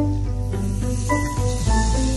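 Background music, a melody over a steady bass. From about a second in, a sizzling hiss joins it: pancake batter being poured into hot oil in a frying pan.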